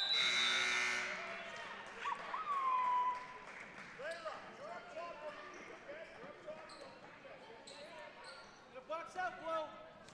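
Indoor basketball game sounds echoing in a gymnasium: a louder burst of noise in the first second, then a basketball bouncing on the hardwood floor, sneakers squeaking in short chirps, and scattered voices of players and spectators.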